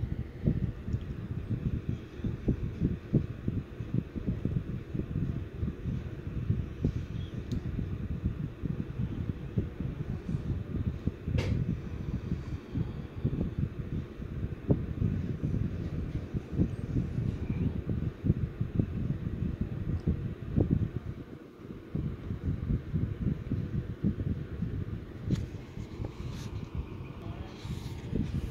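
Low, irregular rumbling with fast small thumps, and one sharp click about eleven and a half seconds in.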